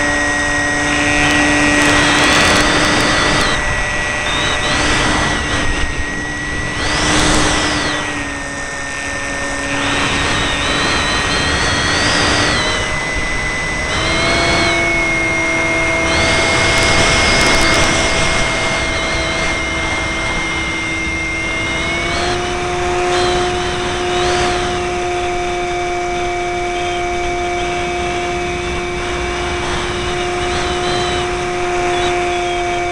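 Electric motor and propeller of a Multiplex FunCub RC model plane whining steadily as heard aboard the plane, with repeated rushes of wind noise. The pitch steps up about halfway through and again about two-thirds through.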